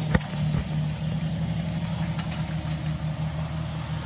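John Deere tractor's diesel engine running steadily as it pulls a multi-row planter, with a single sharp click just after the start.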